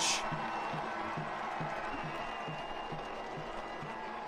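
Stadium crowd noise with music over it, a soft steady beat about three times a second, celebrating a goal.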